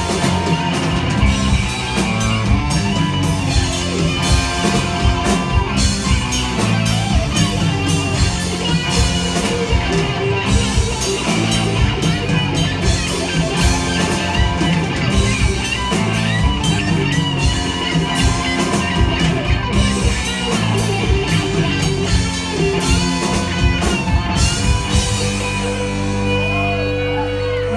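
Live rock band playing loud amplified electric guitars over a drum kit with a steady beat.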